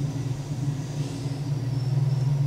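A steady low rumble, with a faint thin high whine coming in past halfway.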